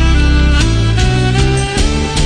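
Recorded music with sustained melodic notes over a steady bass line, the notes changing about every half second.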